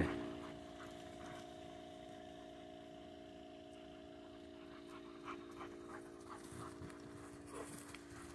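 Faint sounds of Old English Sheepdogs playing and chasing on grass, with panting and a few soft short scuffles in the second half, over a steady low hum.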